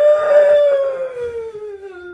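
A girl's long wailing cry: one drawn-out sob that rises in pitch and then sinks slowly as it fades.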